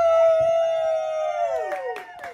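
Two voices holding a long, high 'woooo' cheer together, one sliding down and fading near the end as a few hand claps begin.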